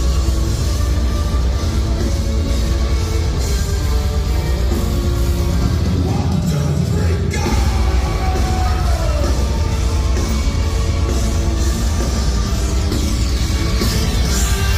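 Metal band playing live through a concert PA, loud and dense with heavy bass, recorded from among the audience. The lowest bass briefly drops out about halfway through.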